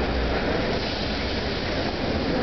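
Steady noise of street traffic, a low rumble under a constant hiss.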